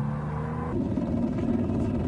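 Heavy armored vehicle engine running with a steady low drone, changing to a rougher rumble about three-quarters of a second in.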